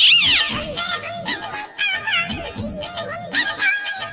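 A recorded song: a singing voice over a music backing track. It opens with a loud falling vocal glide.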